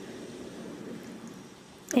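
Distant rumbling roar of a Falcon 9 rocket's nine Merlin 1D first-stage engines during ascent, a steady noisy rumble that fades slightly towards the end.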